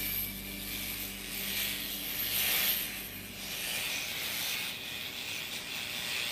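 Electric foil shaver running against stubble on the chin, a rasping buzz that is loudest a couple of seconds in.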